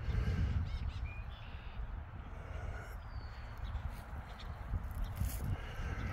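Faint bird calls, typical of crows cawing, over a steady low rumble of wind and handling on a phone microphone carried on a walk.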